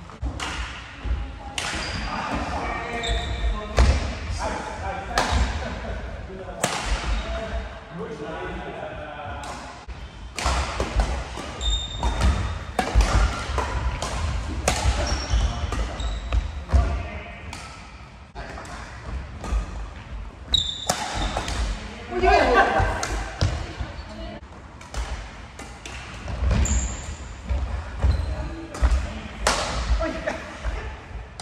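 Badminton play on a wooden sports-hall floor: rackets striking the shuttlecock with many sharp cracks, feet thudding and short high shoe squeaks, echoing in the large hall.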